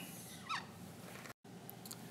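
Dry-erase marker squeaking once on a whiteboard as a line is drawn: a short squeak falling in pitch about half a second in, then quiet room tone with a few faint ticks.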